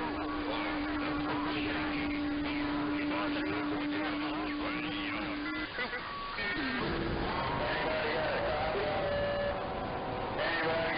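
Citizens band radio traffic around 27 MHz received in AM through an online SDR: voices of CB operators through static, with a steady low tone. About six seconds in, the receiver is retuned to another channel, the tone stops and different signals come in.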